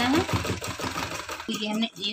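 Domestic sewing machine running steadily as it stitches cotton fabric, then stopping abruptly about a second and a half in.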